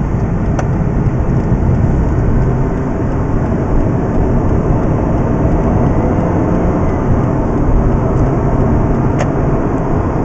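Mazda RX-8's rotary engine and road noise heard inside the cabin as a steady drone while the car is driven onto the motorway, with two brief clicks, one about half a second in and one near the end.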